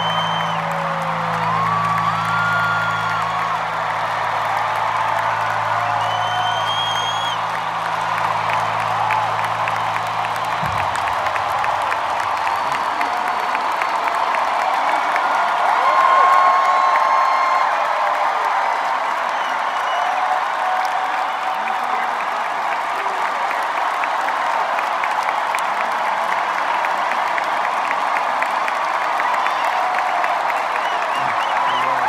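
A big arena crowd cheering, applauding and whistling. Underneath, the band's low held closing chord sounds until it stops abruptly about ten seconds in, and the cheering carries on.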